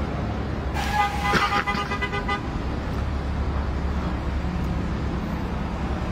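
A vehicle horn sounds once, a steady held tone lasting about a second and a half, starting about a second in, over the steady low rumble of city street traffic.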